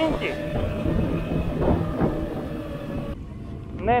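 A Honda motorcycle's engine running at low road speed, heard close from the bike under a dense, rumbling wind noise on the microphone.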